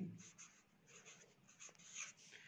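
Blue felt-tip marker writing a word on paper: a run of faint, quick scratching strokes.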